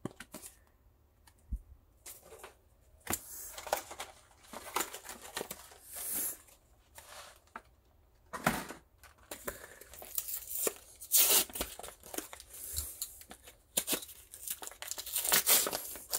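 Plastic and foil card packaging crinkling and tearing in short bursts, with cards clicking against each other in between; the loudest tearing comes near the end as the next blister pack is cut and pulled open.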